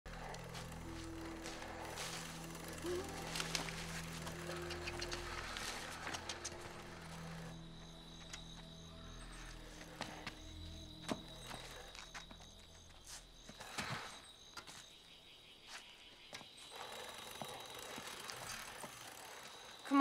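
Soft film score of low, sustained tones for about the first thirteen seconds, dropping away to faint ambience with a thin, steady high tone and scattered small clicks and knocks.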